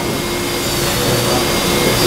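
Steady hum and rushing noise of running machinery, even throughout, with a low steady tone running through it.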